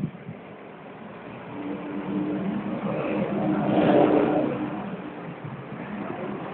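Kawasaki KZ1000's air-cooled inline-four engine running at a steady idle through its custom multi-pipe exhaust. It grows louder from about a second and a half in, is loudest around four seconds in, then eases off, with no change in pitch.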